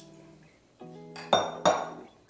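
Two sharp clinks of a glass mixing bowl being set down, a third of a second apart in the second half, over soft background music of held guitar-like notes.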